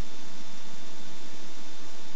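Steady cabin noise of a Cessna 172 on final approach: the engine, propeller and airflow make an even, unchanging hiss with a faint hum under it.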